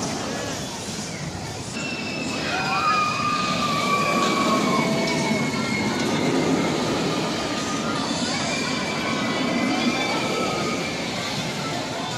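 Steel roller coaster train running along its track: a steady rumbling roar with high squealing tones that hold for a few seconds at a time, growing louder about two seconds in.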